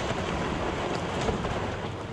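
Steady rumble of brick and debris collapsing as a house's front wall and chimneys are demolished, with no single sharp crash standing out.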